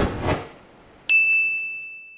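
Logo sting sound effect: a short rushing swell, then about a second in a single bright ding that rings out and fades away.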